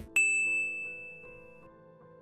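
Logo jingle ending on a single bright chime just after the start, ringing and fading over about a second and a half above a held musical chord that slowly dies away.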